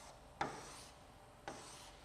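A plastic stylus striking and drawing across the glass of an interactive touchscreen board while underlining words: two faint strokes, each a sharp tap followed by a short rubbing scrape, about a second apart.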